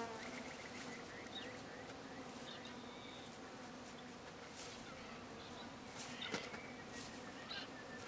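Faint, steady buzzing of flying insects, with a few short faint chirps now and then.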